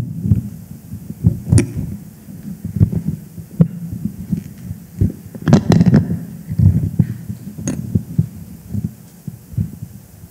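Microphone handling noise: irregular low thumps and rubbing as the microphone on its stand is moved and adjusted by hand, with a few sharper knocks, the loudest cluster about halfway through.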